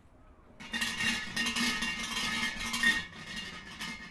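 Shrine bell (suzu) shaken by its rope: a metallic jangling rattle that starts about half a second in, peaks near the three-second mark and trails off over the last second.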